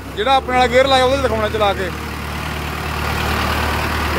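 Mahindra Arjun 555 DI tractor's diesel engine running as the tractor reverses, steadily getting louder through the second half. A man's voice is heard over it in the first two seconds.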